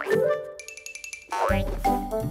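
Cartoon soundtrack music with sound effects: a rising slide into a held note, a high twinkling run in the middle, then another rising slide before the music comes back in with a bass line about one and a half seconds in.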